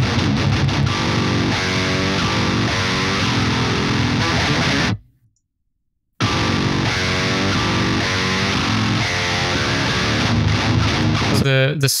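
High-gain distorted electric guitar riff played back through the Bogren Digital MLC Subzero amp simulator, first with the amp's bright switch off. It cuts out about five seconds in, then the same riff plays again with a bright setting on, sounding a bit more aggressive.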